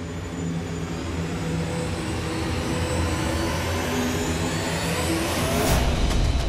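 Dramatic TV-serial background score: sustained low notes under a whooshing swell that grows steadily louder and crests just before the end.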